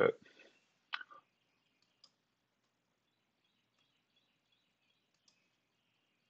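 Computer mouse clicking: one sharper click about a second in, then a few faint, scattered ticks over a low hiss.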